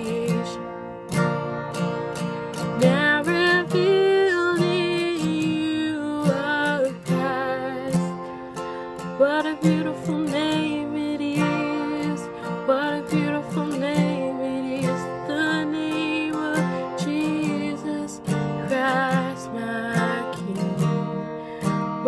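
A woman singing a slow worship song, accompanying herself on an acoustic guitar with steady strumming.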